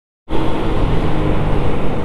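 Honda Biz 100 step-through motorcycle's small single-cylinder four-stroke engine running at a steady cruise, under a loud, steady rush of wind and road noise. It cuts in abruptly about a quarter second in.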